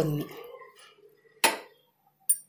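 A single sharp metal clink about one and a half seconds in, ringing briefly: a metal spoon knocking against a steel kadai.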